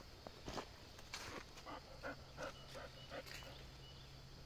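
A run of short animal calls, about eight in quick succession, over a faint steady background.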